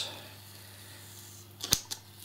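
Fingernail picking at the edge of a security seal sticker on a cardboard box: quiet for most of the time, then a few sharp clicks close together about three-quarters of the way in, over a low steady hum.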